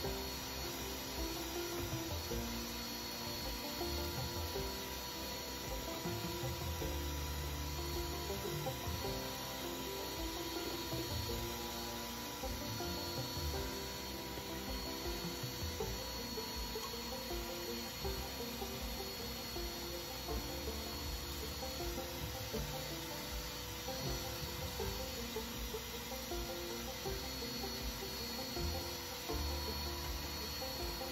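Background music with a steady motor whine underneath from a vacuum cleaner running while its hose works the van's front footwell.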